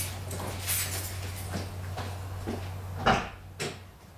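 A few light steps and knocks over a steady low hum, then a sharp clack about three seconds in and a smaller one half a second later: a car door being unlatched and opened.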